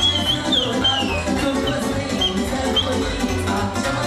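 Romanian sârba dance music played by a wedding band. In this instrumental passage a high lead melody runs in quick ornamented turns and slides over busy accompaniment and a steady beat.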